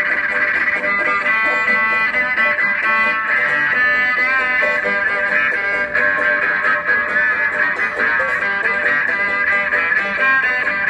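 Instrumental street music: a banjo being played with a bowed electric upright string instrument, the bowed melody line sliding and wavering in pitch over the plucked banjo.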